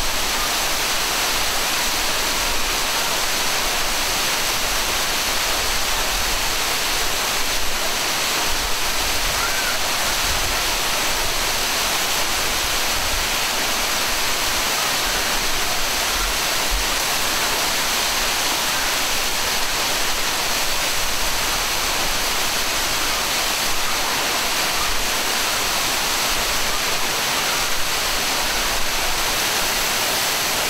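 Waterfall: water pouring down and splashing onto rocks in a steady, unbroken rush.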